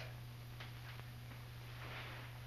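Low steady hum with a few faint ticks.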